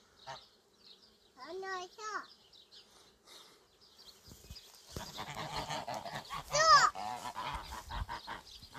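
Domestic geese honking: a pair of short calls about two seconds in, then a louder, higher honk near the end.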